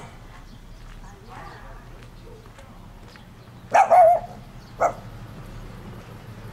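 A small dog barks twice: a longer bark with a wavering pitch just under four seconds in, then a short bark about a second later. Faint footsteps on asphalt tick under it throughout.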